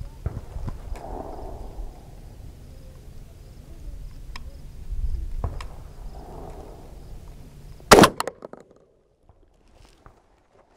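A single shotgun blast about eight seconds in, with a brief echo, from a Charles Daly 601 DPS semi-automatic 12-gauge firing a Fiocchi Exacta low-recoil 00 buckshot load.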